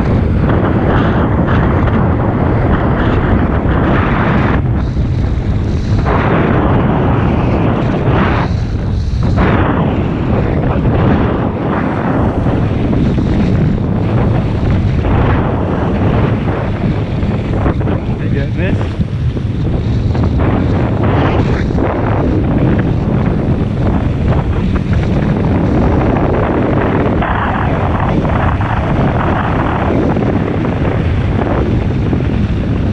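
Wind buffeting a GoPro action camera's microphone, mixed with the rush and splash of water skis cutting across a lake at towing speed. The noise is loud and steady, with brief dips in the hiss about five and nine seconds in.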